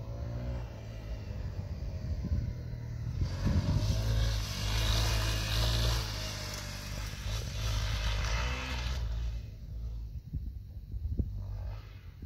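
Off-road dirt bike riding past on a dirt trail, its engine revving up in pitch as it accelerates. It grows loudest as it passes, around four to six seconds in, and fades away after about nine seconds.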